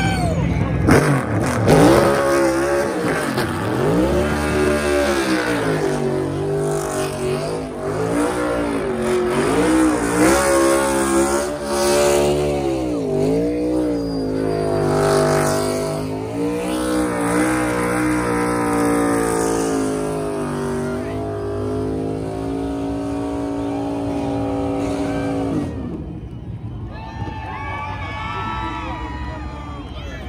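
NASCAR Cup car's V8 engine revved up and down again and again during a burnout, with the rear tires spinning on the track. Near the end the revving stops and the engine sound falls away.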